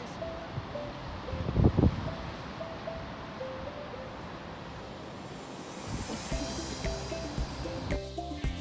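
Background music with a simple stepping melody, laid over the steady wash of sea waves breaking on rocks, with one low thump a little under two seconds in.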